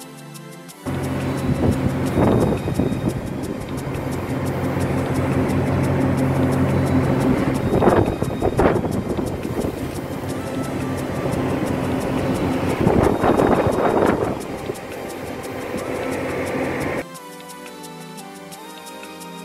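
Steady low drone of a boat's engine under way, with wind on the microphone and sea rushing past, surging in several gusts. It starts abruptly about a second in and cuts off suddenly near the end.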